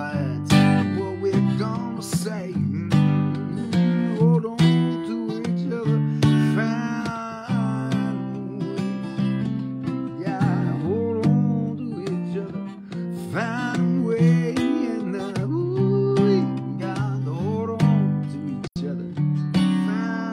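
Acoustic guitar strummed and picked in a steady rhythm, with a man singing over it.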